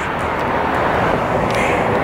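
Steady rushing noise of road traffic going by, swelling slightly and easing again.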